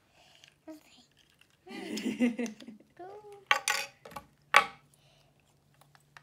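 A child's brief wordless vocal sounds, then two sharp clicks about a second apart, the second the louder, as wooden and plastic toy-car construction pieces are pushed together.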